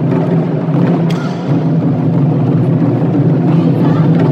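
Taiko ensemble drumming: many Japanese drums struck together with wooden sticks in a dense, continuous, loud beat.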